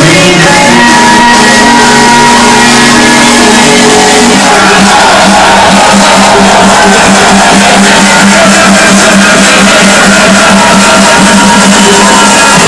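Very loud house music from a DJ's sound system, with crowd shouts mixed in. A held synth chord gives way about four seconds in to a fast pulsing bass line.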